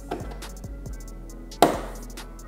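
A plastic push-pin trim fastener snapping into a motorcycle's plastic side panel with one sharp click near the end, over background music with a beat.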